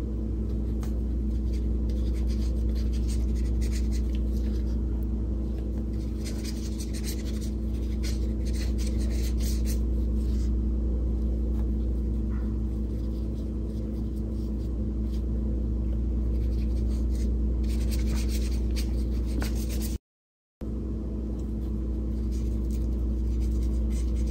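Small paintbrush scratching and dabbing acrylic paint onto paper in two spells of quick strokes, over a steady low hum. The sound cuts out for a moment near the end.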